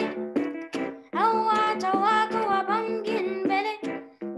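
A boy singing a reggae song, his voice sliding between held notes, while he accompanies himself with chords on an electronic keyboard. There is a short break about a second in.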